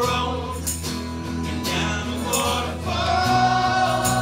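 Live band music: strummed acoustic guitars with several men singing together.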